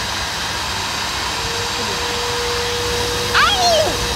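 Hair dryer and handheld cordless vacuum cleaner running together, a steady rushing noise. About a second in, a steady motor whine joins it, and near the end a woman cries out as the vacuum nozzle is held to her hair.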